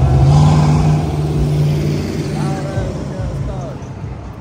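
A car engine running loud and low as the car drives past, its pitch rising slightly just after the start and then fading away over the last two seconds.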